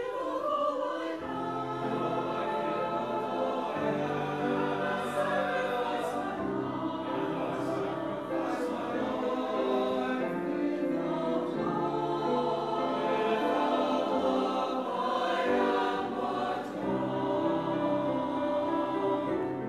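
Church choir singing, with long held notes that move together from chord to chord.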